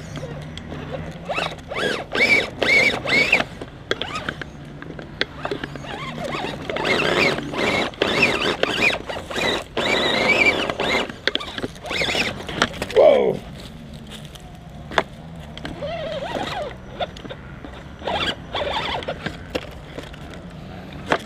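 An Axial Wraith radio-controlled rock crawler's electric motor and gears whining in short bursts that rise and fall in pitch as it climbs over logs, with clicks and knocks of the tyres and chassis against the wood. The whine drops away about two-thirds of the way through, and only scattered knocks follow.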